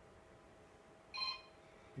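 A short electronic beep, a few steady tones together lasting about a quarter second, about a second in, against quiet room tone.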